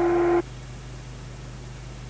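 A steady electronic tone held on one pitch cuts off suddenly about half a second in. After it only tape hiss and a low, steady mains hum remain.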